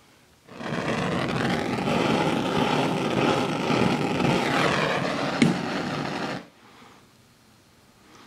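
A handheld electric blower running steadily for about six seconds, switched on and off abruptly, with a brief click shortly before it stops.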